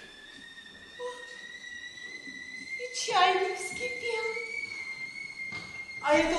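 A steady high whistle-like tone, rising slightly in pitch, held throughout, with a brief vocal exclamation about three seconds in.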